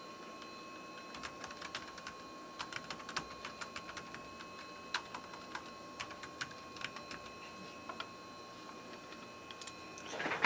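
Faint, irregular clicks and taps over a steady thin whistle-like tone and a low hum.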